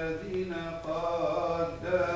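Voices chanting a Coptic Orthodox liturgical hymn, with long held notes that glide from pitch to pitch.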